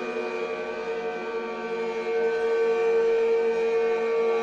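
Guitar-based ambient drone music: a sustained chord of steady tones with no beat, growing a little louder about halfway through.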